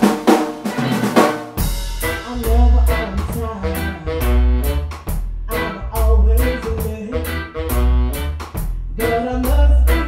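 Live blues band playing: electric guitar and a drum kit with snare hits. For the first second and a half the deep bass is absent. The bass and the full groove come in after that.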